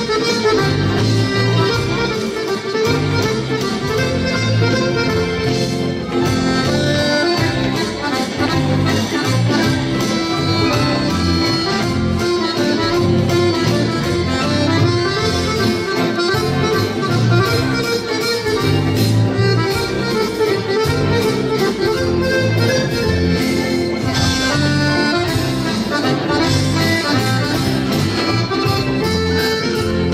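Chromatic button accordion playing a lively musette medley with the band, carrying the melody over a steady rhythmic bass accompaniment.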